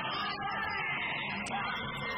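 Yosakoi dance music played loud over a gymnasium's wall loudspeakers, steady and unbroken.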